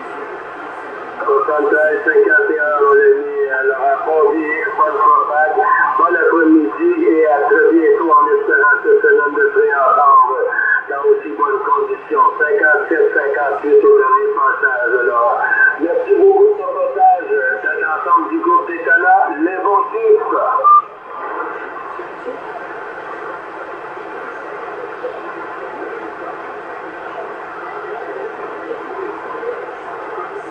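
A distant station's voice received over a CB radio on 27.625 MHz, thin and narrow with no bass or treble, over a steady hiss of band noise. The transmission starts about a second in and stops about 21 seconds in, leaving only the hiss of the open channel.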